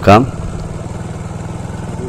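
An engine running steadily at an even, low speed: a low hum with a fine, regular pulse.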